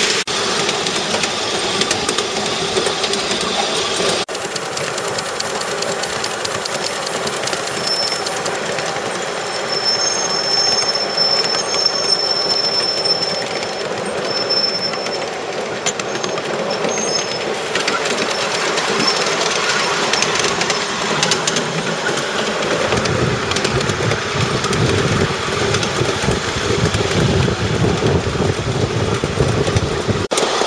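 Miniature ride-on railway train running along its track, with a steady rumble of wheels and rolling stock and a heavier low rumble later on. A thin high-pitched squeal comes and goes in the middle.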